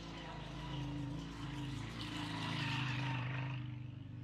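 Small motorcycle engine approaching and passing close by, getting louder to a peak nearly three seconds in, then dropping away.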